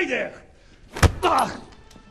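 A single heavy thud about a second in, a man being thrown down onto a stone floor, with a man's short cries just before and just after it.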